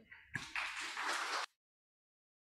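A single tap on the microphone, then about a second of faint lecture-hall noise, before the stream's audio cuts off suddenly to dead silence as it is muted.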